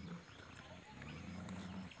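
A Bhotiya dog growling low: one quiet rumble that starts about half a second in and lasts over a second.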